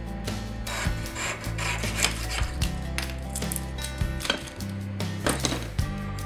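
Jeweller's piercing saw cutting through soft cuttlefish bone with a series of uneven rasping strokes, over steady background music.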